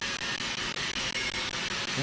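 Steady rushing noise of a running fan or blower motor.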